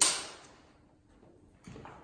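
A film clapperboard's sticks snapped shut once, a single sharp clap marking the take for sound sync, ringing briefly in the room before fading to low room tone.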